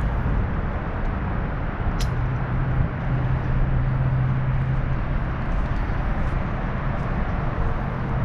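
Steady outdoor rumble and hiss with a low hum running under it, and one sharp click about two seconds in.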